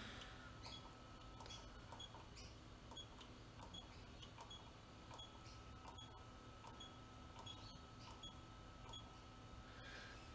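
Faint short ticks, about two a second, from the push buttons on a Power One Aurora UNO solar inverter's display panel as its readings are scrolled through, over a faint steady high tone.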